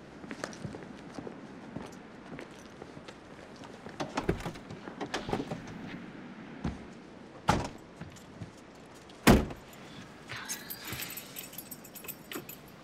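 Footsteps and handling noises, then a car door opening and shutting, with the loudest thud about nine seconds in. Keys jangle near the end.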